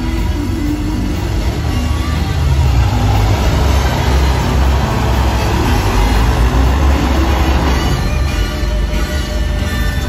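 Airboat engine and caged propeller running as the boat crosses the water, a steady low rumble that swells loudest in the middle and eases near the end, with show music playing over the loudspeakers underneath.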